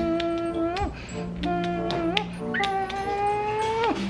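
Background music: a few held notes at shifting pitches over a steady low tone, with a few short clicks between them.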